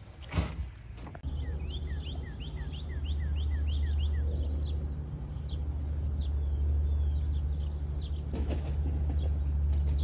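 Outdoor ambience: a steady low rumble with a small bird chirping over it, a quick run of short chirps in the first few seconds, then scattered ones. A sharp knock just under half a second in.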